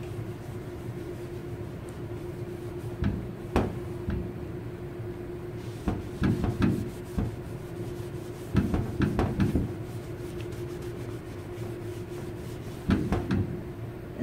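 A cloth rag wiping brake fluid off a painted car panel: several short spells of rubbing with light knocks of the hand on the panel, over a steady background hum.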